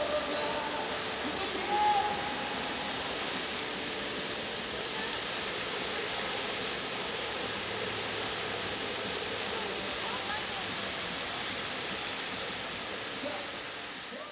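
Water jets of a lit fountain spraying and splashing back into the pool, a steady rushing hiss of falling water.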